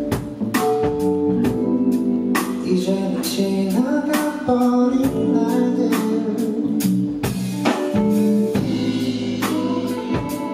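Live band playing a retro soul song: a drum kit keeps a steady beat under held keyboard chords, with a male singer's voice.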